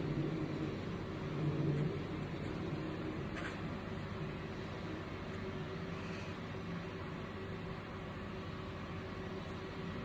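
Steady low droning hum over a bed of background noise, with a brief swell about a second and a half in.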